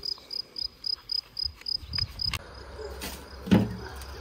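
A cricket chirping in the grass, a high, even pulse about four times a second, which stops a little over two seconds in. Near the end comes a single loud thump.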